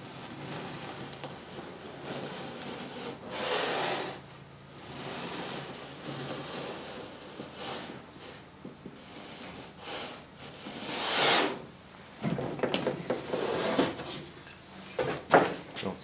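Wooden blocks rubbing and sliding against a plywood panel while a line is scribed along a block in pencil, with a few light knocks of wood on wood near the end.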